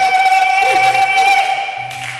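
Live stage performance heard through a PA: a man's voice over music, with a steady high tone held throughout that fades near the end.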